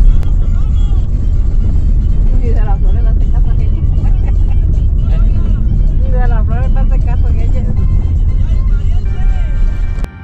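Car tyres rolling over a cobblestone street, heard from inside the car as a loud, steady, coarse rumble, with voices heard over it at times.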